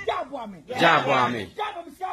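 Loud shouted calls from a human voice, two or three short bursts with gliding pitch, like a ritual call-and-response chant.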